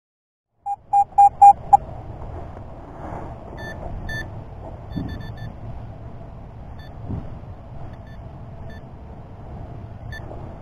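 Metal-detecting gear beeping: five short, loud electronic beeps at one pitch in quick succession about a second in. After that come a steady low rush and a scattering of faint, short, higher beeps.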